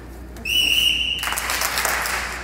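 A single steady, high whistle note held for under a second, followed by a burst of applause from a small audience.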